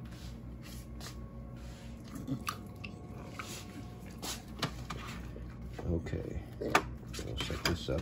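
A dog chewing a piece of raw beef marrow, with scattered small clicks and crunches of its teeth.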